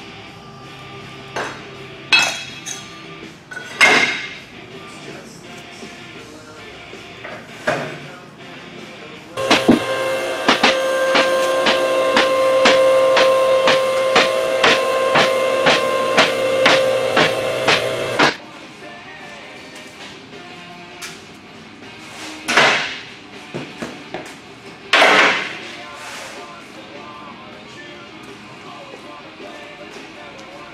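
Two-post vehicle lift raising a pickup truck: its electric hydraulic pump runs steadily for about nine seconds, starting about a third of the way in, while the safety locks click about twice a second as the carriages climb. Sharp metal clanks come before and after, as the lift arms are set and handled.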